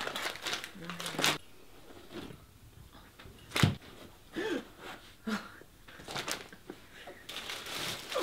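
Rummaging through a handbag: rustling and crinkling of its contents in scattered short bursts, with one sharp thump about three and a half seconds in.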